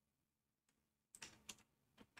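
A few faint computer keyboard clicks, in two small clusters a little over a second in, over otherwise near silence.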